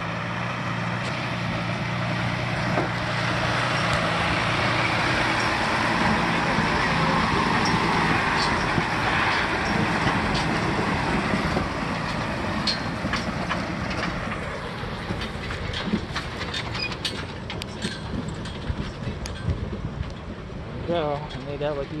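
A large railroad service truck's engine running as it drives through a shallow stream crossing, with water rushing and splashing around its tyres; the sound swells about halfway through as the truck passes close, then fades as it moves away, leaving scattered clicks. A short laugh near the end.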